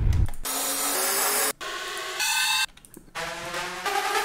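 Future bass riser samples from a sample pack previewed one after another in a DAW browser. Three or four short clips, noisy sweeps with pitched synth layers, each cut off abruptly after about a second as the next one is clicked.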